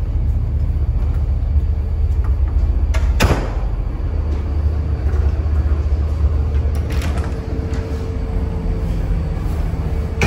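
Steady low rumble of a riverboat's engines heard inside the hull, with a sharp knock like a door about three seconds in and a fainter one around seven seconds.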